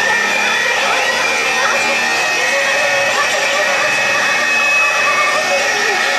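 Loud, continuous distorted noise with wavering, bending feedback tones, from effects pedals worked by hand during a live noise-rock set.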